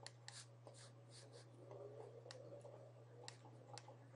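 Faint taps and scratches of a stylus writing numbers on a tablet, about a dozen light ticks over a steady low electrical hum.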